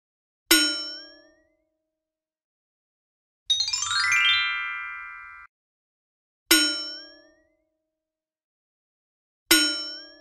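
Editing sound effects: three struck, bell-like dings, about half a second in, about six and a half seconds in and near the end, each ringing away within about a second with a short rising twang. Between them, at about three and a half seconds, a quick rising run of chime tones settles into a held chord and cuts off suddenly two seconds later.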